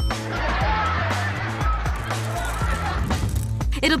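Tiny Nerds candies pouring into a plastic candy dispenser, a steady grainy patter that stops shortly before the end, over background music with a steady bass.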